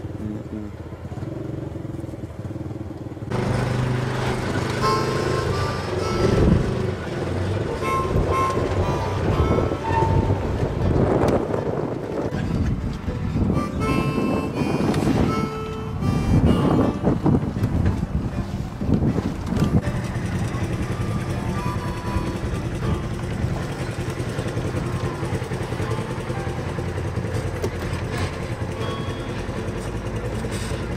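An off-road vehicle's engine running on a rock trail. About three seconds in, background music starts over it and plays to the end.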